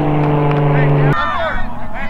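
A steady, even-pitched mechanical hum, motor-like, that cuts off abruptly just over a second in, followed by a jumble of overlapping voices.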